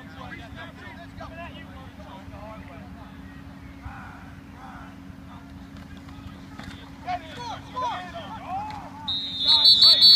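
Players and onlookers shouting during a football play, getting louder in the last few seconds. About nine seconds in, a high-pitched referee's whistle blows, the signal that the play is dead.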